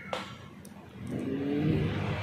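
A motor vehicle engine, getting louder and rising in pitch over the second half.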